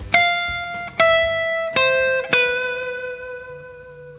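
Fender Stratocaster electric guitar picking a single-note riff: four notes stepping down in pitch about a second apart, the last one held and left to ring out and fade.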